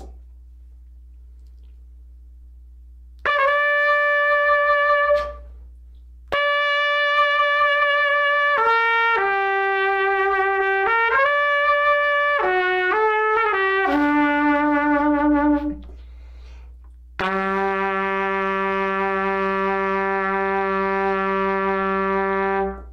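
Trumpet played through a Monette Classic B4LD S1 'slap' mouthpiece: after a quiet start, one held note, then a phrase of several notes moving up and down, then a long low held note, the player's low A, lasting about five seconds near the end.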